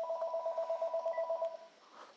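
A phone ringing: an electronic two-tone trill, pulsing rapidly, that stops after about a second and a half.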